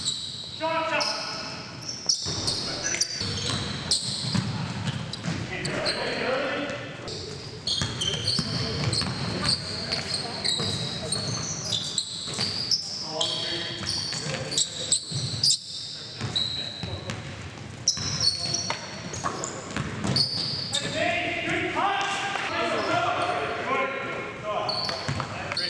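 Basketball game sound in a large, echoing gym: the ball bouncing on the hardwood floor, many short high sneaker squeaks, and players' voices calling out, loudest near the start and again near the end.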